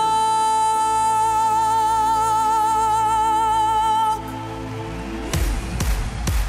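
A female singer holds one long high note with vibrato over sustained chords from a folk orchestra, then cuts off about four seconds in. A few heavy thumping beats follow near the end.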